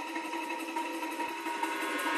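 A techno track's beatless breakdown: a steady synth drone of several held tones, with no drum beat.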